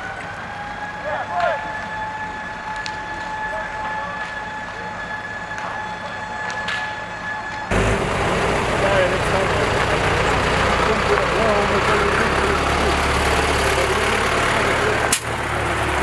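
A burning wooden cottage crackling, with a steady high whine running under it. After a cut about eight seconds in, a fire engine drives up, its engine running loudly with a deep rumble.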